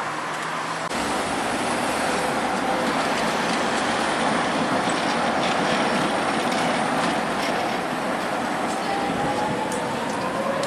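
Street traffic at a junction as a pair of coupled trams rolls through, with a car passing close by. A faint rising squeal comes in near the end, and there are a few sharp clicks.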